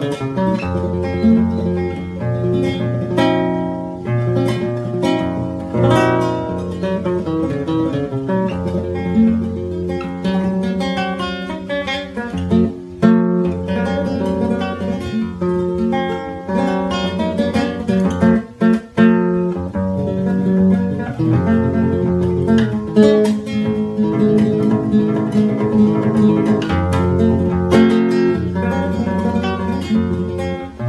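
Nylon-string Spanish classical guitar played fingerstyle in a continuous improvised passage in gypsy flamenco style, with picked notes and chords and short breaks about 13 and 19 seconds in.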